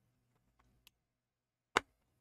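Small model kit parts being pressed into a scale X-Wing engine tube: a faint click just under a second in, then a sharp click near the end as a piece snaps into place.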